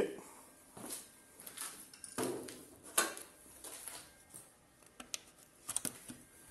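Faint, scattered knocks, clicks and rustles of someone moving about a small workshop while carrying a phone.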